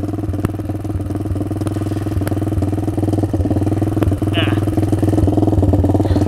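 Lifan 163FML 200cc single-cylinder four-stroke minibike engine idling steadily with an even, fast firing beat. It keeps running while the switch that should shut it off is flipped: the switch won't kill it.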